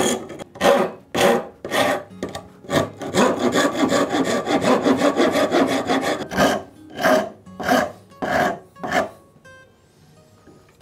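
Wood rasp and file stroking across a zebrawood plane tote: single scraping strokes about twice a second, then a run of quick short strokes in the middle, then a few more single strokes that stop about nine seconds in.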